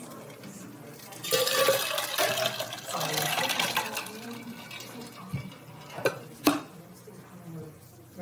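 A rush of liquid noise starting about a second in and lasting nearly three seconds, then three sharp clicks.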